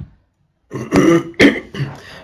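A man clears his throat into the microphone, starting about two-thirds of a second in, with a couple of sharp rasps.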